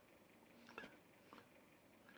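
Near silence: room tone, with one faint short sound a little under a second in and a couple of tiny ticks after it.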